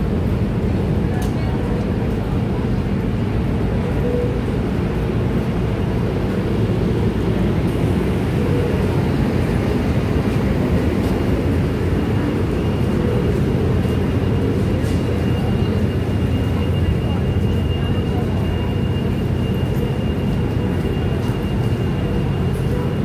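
Steady low rumble of a stopped Amtrak bilevel passenger train idling at the platform, with people talking. A faint, thin, high whine joins about halfway through.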